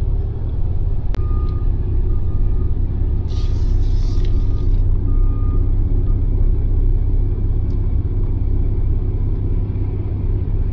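Steady low engine and road rumble of a vehicle heard from inside its cab, with a click about a second in. A row of short, faint electronic beeps follows over the next few seconds, and a short hiss of air comes about three to four and a half seconds in.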